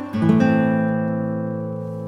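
Background music: a chord struck just after the start is left ringing and slowly fades.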